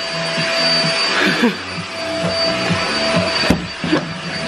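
Canister vacuum cleaner running steadily with a constant whine as its hose nozzle is worked over a couch and up a wall. There is a sharp knock about three and a half seconds in.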